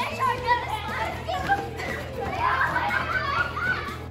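A group of young children's voices, chattering and shouting over one another, over background music with a steady low bass line.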